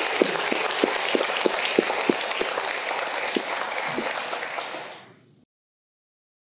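Audience applause: many people clapping, dying away near the end.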